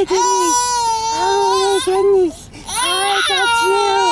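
A toddler squealing with laughter while being tickled: long, high-pitched held squeals, broken by a short pause about halfway through.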